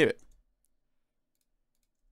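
A man's voice finishes a word, then one faint click about half a second in, followed by silence.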